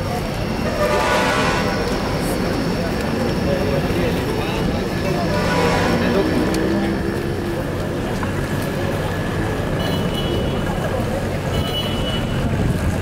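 Crowd walking and talking beside road traffic, with a steady rumble of engines. Two brief horn toots stand out, about a second in and near six seconds.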